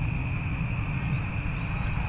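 Wind buffeting the microphone outdoors: an irregular, fluctuating low rumble, with a thin steady high-pitched drone underneath.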